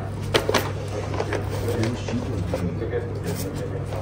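Plastic and foil snack packets handled in a woven basket, giving a few light clicks and rustles over a steady low hum, with faint voices in the background.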